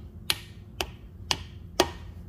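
A hammer tapping a metal socket to drive a new valve stem seal down onto its valve guide: four sharp, evenly spaced taps about half a second apart, the last the loudest, seating the seal all the way down.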